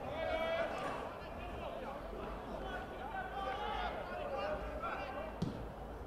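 Faint, distant calls and shouts from players and spectators across a Gaelic football pitch, with a single sharp thump near the end.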